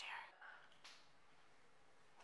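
Near silence: room tone after the tail of a spoken word, with one faint short hiss a little under a second in.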